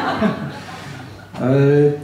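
A man chuckling softly into a handheld microphone, fading to a short lull, then a drawn-out hesitant "eh" starting about one and a half seconds in.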